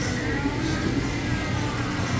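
Soundtrack of an anime battle scene played through a display screen's speakers and picked up in the room: a loud, steady, dense rush of fight sound effects.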